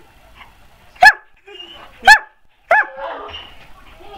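Irish wolfhound barking three times, short loud barks: two about a second apart, then a third following quickly after the second.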